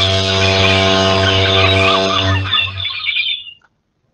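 Animated-logo sound effect: a steady low held tone with birds chirping over it, fading out about three and a half seconds in.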